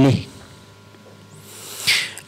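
A man's sentence trails off, then a second of quiet studio room tone, then a rising hiss of breath as he draws in air through his mouth just before speaking again.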